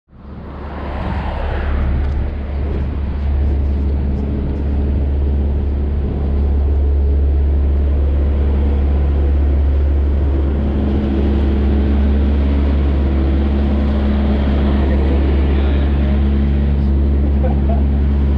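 A loud, steady low mechanical drone, engine-like, with a few faint steady tones above it; it swells up over the first two seconds and then holds level.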